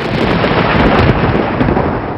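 Thunderclap sound effect that starts suddenly and rumbles on loudly, peaking in the first second.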